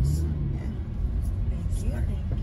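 Steady low engine and road rumble heard inside the cabin of a car driving at highway speed.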